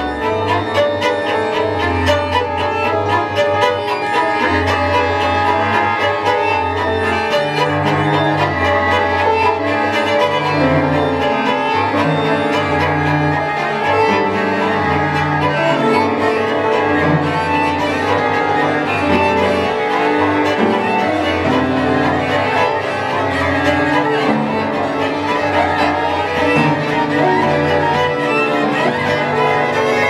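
Chamber ensemble playing contemporary music led by bowed strings: a cello holds long low notes that step from pitch to pitch beneath busier violin and viola lines.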